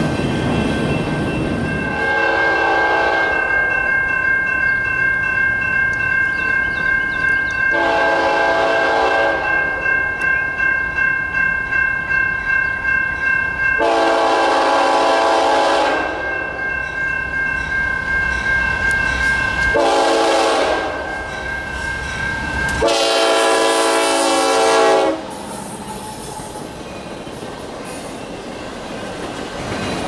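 Norfolk Southern freight locomotive's air horn sounding five separate chord blasts as the train approaches, the fourth the shortest, over the rumble of rail cars and a steady high-pitched ring.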